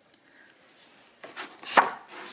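Hands handling a small kraft-card tab and twine on a tabletop: a short run of scraping and rustling with a sharper knock near the end.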